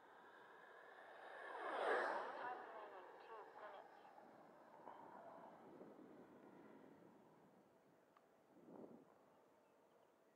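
An 80mm electric ducted-fan RC jet, an Xfly T-7A, flying past. Its fan sound swells to a peak about two seconds in and fades away, with a shorter, fainter swell near the end.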